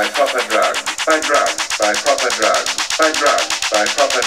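Tech house track in a stripped-down section with no low bass: fast, even percussion ticks under a repeating chopped vocal sample.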